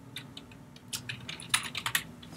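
Typing on a computer keyboard: a few scattered keystrokes, then a quicker run of keys near the end.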